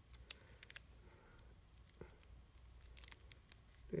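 Near silence, with a few faint clicks and handling noise from the plastic throttle handle of a petrol trimmer being fitted together by gloved hands.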